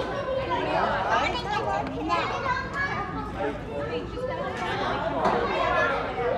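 Many voices of children and adults chattering at once, overlapping so that no single voice stands out.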